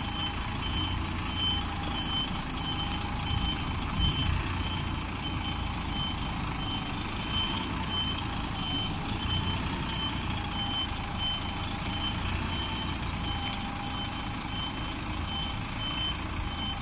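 DAF CF articulated truck reversing slowly, its diesel engine running low and steady while a high-pitched reversing alarm beeps at a regular pace.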